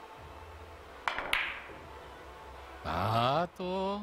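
A cue tip strikes a billiard ball, and a quarter second later two resin carom balls click together, the second click ringing briefly. This is a shot on a three-cushion carom billiards table.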